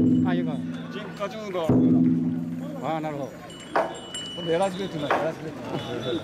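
Voices talking, with a low ringing tone that sets in suddenly right at the start and again about two seconds later, each time fading away over a second or so.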